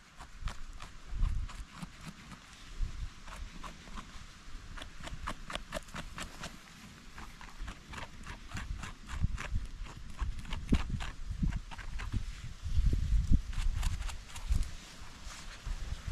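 Mushroom knife scraping and paring dirt off the base of a porcini stem: a run of irregular small clicks and scrapes, with a low rumble rising and falling underneath.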